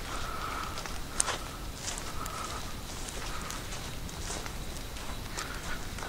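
Footsteps of a person walking on a sandy dirt road, a few scattered steps, the sharpest about a second in. A faint high steady tone comes and goes behind them.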